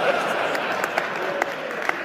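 Congregation laughing and applauding, a steady wash of noise with a few sharper claps standing out.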